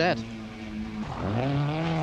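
Rally car engine under load at steady revs; about a second in the note breaks off and then climbs again as the car changes gear and pulls away.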